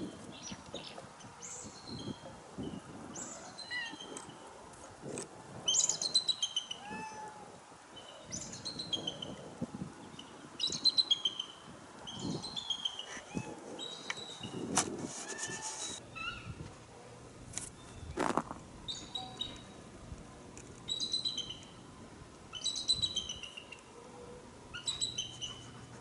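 Bald eagles calling: short runs of high, falling, chittering notes, repeated every second or two.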